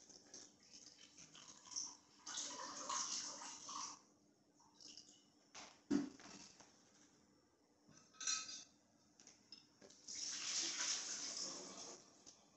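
Water running from a tap in two stretches of about two seconds each, as a bong is rinsed out, with a sharp knock about six seconds in.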